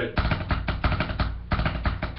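A deck of trading cards being shuffled by hand: a rapid, continuous run of sharp card clicks, many a second.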